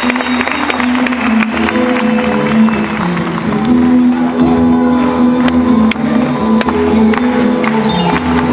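Live rembetiko music played by a plucked-string ensemble of bouzoukia and guitars, with a steady run of changing notes.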